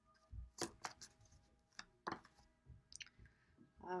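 Faint, scattered light clicks and taps of tarot cards being handled, shuffled in the hands and laid down on a cloth-covered table.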